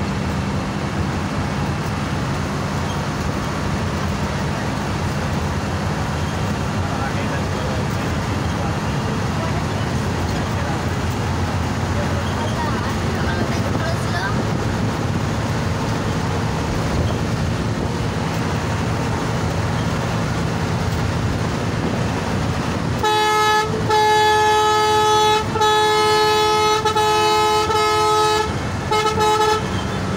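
Coach engine and road noise heard steadily from inside the cab. About three-quarters of the way in, a loud horn with several notes sounding together comes in, given as a run of blasts with short breaks, for about six seconds.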